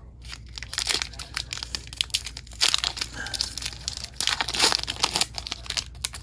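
Foil wrapper of a Pokémon TCG booster pack crinkling and being torn open by hand: a fast run of crackles with louder bursts in the middle and near the end.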